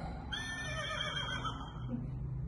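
A man imitating a horse's whinny as he breathes out: one high, slightly wavering call lasting just over a second.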